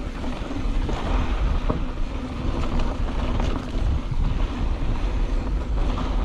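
Wind buffeting the microphone of a camera riding on a mountain bike moving down a dirt singletrack, a steady low rumble, with the tyres rolling over the dirt and a few faint ticks.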